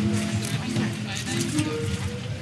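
Background music of held notes, with faint voices underneath.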